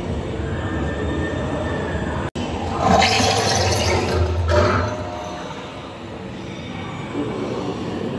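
Dark-ride car rolling on its track with a steady low rumble, with loud hissing bursts about three seconds in and again near four and a half seconds.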